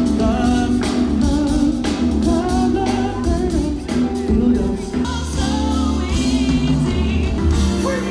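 Live band music with singing over bass and drums.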